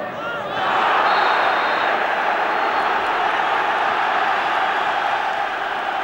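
A large stadium crowd rises loudly about half a second in and holds steady as it reacts to a hard sliding foul.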